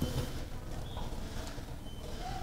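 Low background noise of a large store: a steady low rumble with faint, indistinct sounds and no clear event.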